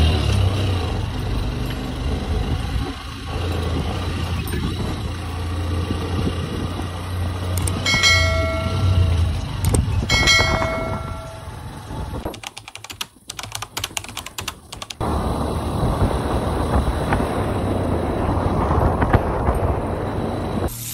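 Small motorcycle's engine running as it is ridden through city streets, a steady low drone mixed with wind and road noise. About eight and ten seconds in come two short ringing chime tones, and a brief run of clicks follows a few seconds later.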